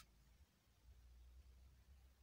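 Near silence: a pause between sentences, with only a faint low hum.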